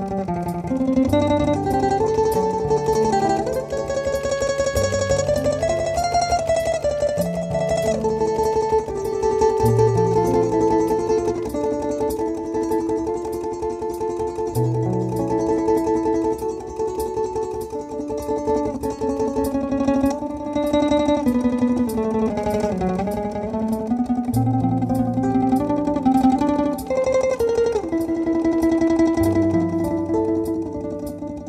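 Domra played with fast tremolo picking, a melody that slides in pitch in places, over looped layers of sustained low notes that change every few seconds from a loop processor.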